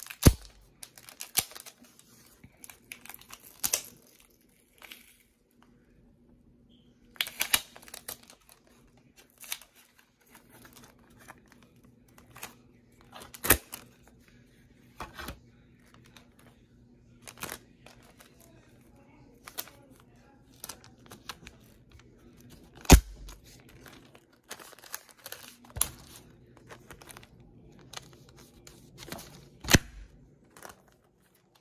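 Clear tape being pressed onto a scratched CD and ripped off again and again, peeling away the disc's foil layer: short irregular ripping and crinkling sounds with a few sharp clicks.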